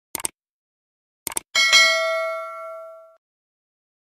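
Subscribe-button animation sound effect: a pair of quick clicks, another pair about a second later, then a bright notification-bell ding that rings out for about a second and a half.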